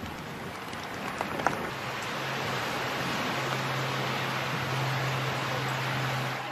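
Steady rushing wind noise across the microphone, slowly growing louder, with a low steady hum in the second half.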